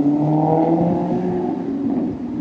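A car driving past close by, its engine a steady hum that drops slightly in pitch and thins out near the end.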